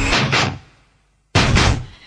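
Two sudden loud hits, each dying away within about half a second, with a moment of near silence between them, in a break in the music.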